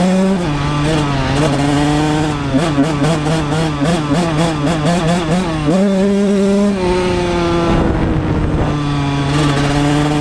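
1999 Honda CR125R's 125 cc two-stroke single-cylinder engine running under way, its pitch rising and falling with the throttle. About six seconds in it steps up, then the revs fall away slowly for a couple of seconds as it coasts, and they pick up again near the end.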